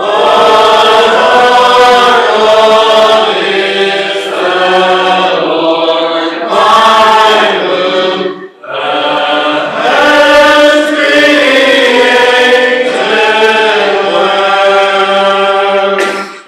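A congregation sings a metrical psalm in unison without instruments, in slow, held notes. There is a short break between lines about halfway through.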